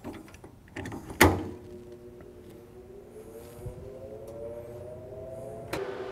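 Laguna SmartShop 2 CNC router being powered up: a sharp click of the switch about a second in, then a hum of several tones that slowly rises in pitch as the machine's electrics come on.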